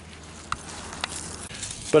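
Quiet outdoor background with two faint clicks, about half a second and a second in, as a handheld camera is moved. A man starts speaking near the end.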